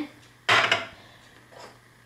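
A single short clatter of a utensil against cookware about half a second in, dying away quickly, then a fainter knock near the end.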